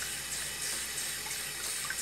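Kitchen faucet running a steady stream into a sink of soapy water.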